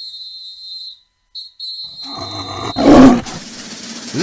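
A steady high whistling tone for about a second, then a big cat's roar that swells to a loud peak about three seconds in and dies away: a tiger-roar sound effect in a Jackson State Tigers logo sting.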